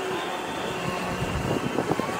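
Steady outdoor ambience: distant crowd noise with wind on the microphone.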